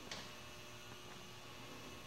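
Faint steady electrical hum and hiss of room tone, with one soft click just after the start.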